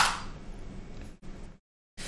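A single sharp click at the start, from the computer controls, as the code cell is run. It is followed by faint hiss that cuts to dead silence a little before the end.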